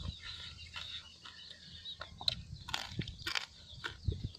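Close-up chewing and lip-smacking by a person eating rice and meat by hand: an irregular run of short wet clicks.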